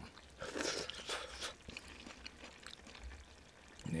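Soft eating sounds: a few short slurping and chewing noises in the first second and a half, then faint scattered clicks.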